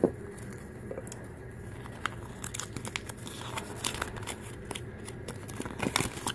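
Paper and plastic crinkling and rustling with small irregular clicks and crackles, as a folded paper collector guide is pulled from a toy capsule and handled, busier in the second half.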